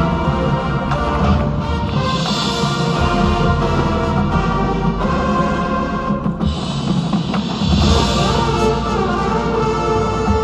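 A high school marching band playing live: brass and woodwinds sounding sustained chords over a front ensemble of marimbas and timpani, carried in a large indoor stadium.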